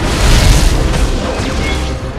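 Action-film soundtrack: a heavy boom about half a second in, the loudest moment, fading away under the film's music score.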